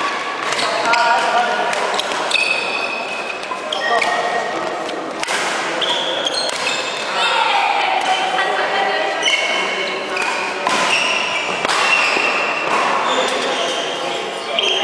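Badminton rally in a reverberant hall: repeated sharp hits of rackets on the shuttlecock, mixed with many short, high squeaks of court shoes on the wooden floor.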